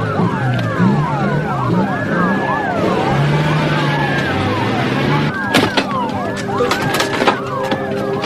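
Several emergency vehicle sirens wailing at once, their rising and falling tones overlapping. Under them a vehicle engine runs, and a car passes near the middle. A couple of sharp knocks come near the end.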